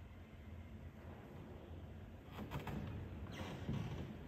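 Quiet church room tone with a low steady hum. A few soft clicks come a little after halfway, then a brief rustle near the end.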